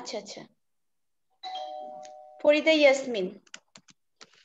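A steady chime of two tones together, like a doorbell, sounding for about a second a little past the start. Near the end come a handful of computer keyboard keystrokes.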